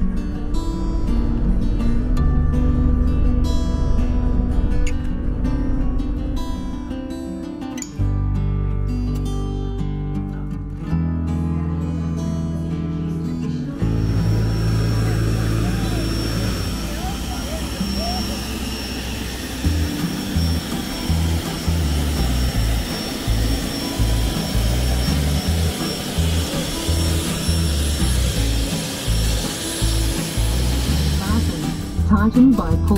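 Background guitar music for about the first 14 seconds. Then the steady high whine and rushing noise of jet aircraft running on an airport apron take over, with the music continuing underneath.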